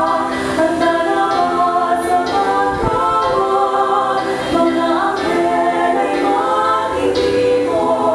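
Three women singing together into handheld microphones, amplified, with long held notes.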